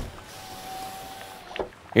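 Rain-like hiss with a faint steady hum, both starting just after the start and stopping about a second and a half in.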